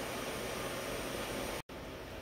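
Steady background noise of a machine shop with the machine powered on, an even hiss with no distinct events. It breaks off in a brief silent dropout a little after a second and a half in, where the recording cuts, then resumes slightly quieter.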